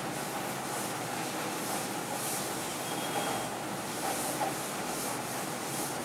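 Chalkboard duster being rubbed across a chalkboard to erase it: repeated swishing wiping strokes, roughly one a second, over a steady room hiss.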